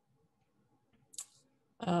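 A pause in a woman's speech with little more than faint room tone. About a second in there is one brief, faint sound, and near the end she starts speaking again with an "uh".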